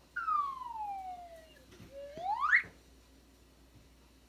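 Cartoon sleeping sound effect: a whistle gliding down in pitch for about a second and a half, then a second whistle sliding back up.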